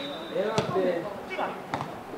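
A football kicked hard on a free kick: a sharp thud about half a second in, then another thud near the end as the ball reaches the goalmouth, with players shouting.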